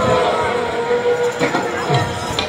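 Live Baul folk music: a held note dies away over the first second and a half, then a barrel drum is struck a couple of times near the end.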